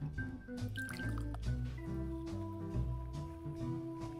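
Background music with a steady low beat, over a carbonated energy drink being poured from a can into a glass cup.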